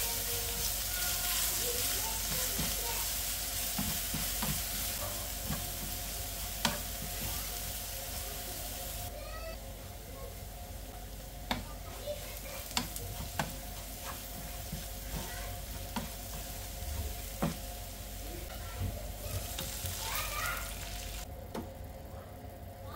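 Oil sizzling around a finely grated mixture frying in a nonstick pan, stirred with a wooden spatula that now and then knocks sharply against the pan. The sizzle is strongest at first, eases off after about nine seconds, and flares up briefly near the end.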